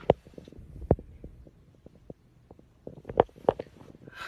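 Handling noise on a hand-held phone: scattered soft thumps and knocks, a strong low one about a second in and a quick cluster just past three seconds.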